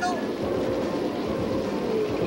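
Cartoon sound effect of a steady rushing noise: a storm whirlpool with a plane flying through it, with no clear tone.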